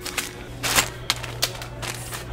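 Small packets of hardware being handled off a shelf: plastic packaging crinkling and small metal parts rattling in a handful of short bursts.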